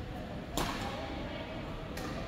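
A badminton racket striking a shuttlecock: one sharp, loud crack about half a second in, ringing briefly in the hall, with a fainter click near the end.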